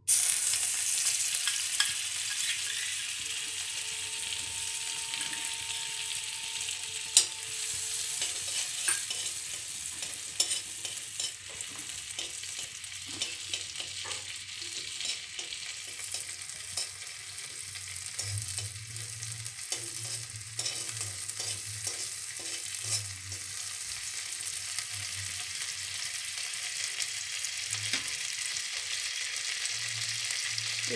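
Butter melting and sizzling in hot oil in a metal kadhai, a steady hiss, with a spoon scraping and clicking against the pan as the butter is pushed around.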